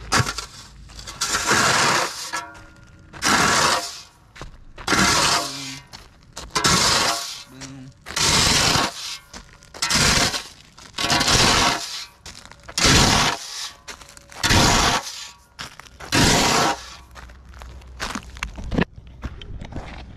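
A flat metal shovel scraping through loose roofing gravel on a flat roof, about a dozen strokes at roughly one every second and a half. Each stroke is a loud grinding rattle of rock on steel and roof felt. It is the gravel being stripped in a flat-roof tear-off.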